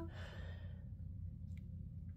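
A woman's short breathy sigh fading out within the first second, then a steady low hum with a faint tick about one and a half seconds in.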